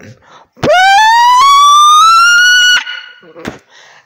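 A child's very loud, high-pitched shriek held for about two seconds, rising steadily in pitch and then cutting off.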